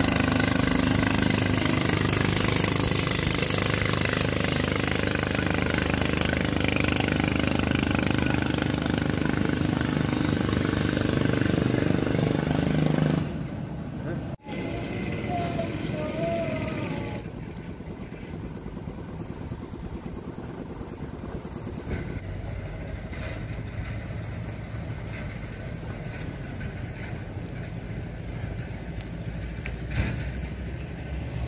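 Small river boat's (kato) engine running steadily as the boat crosses the river, then dropping away sharply about 13 seconds in. A quieter steady outdoor background follows.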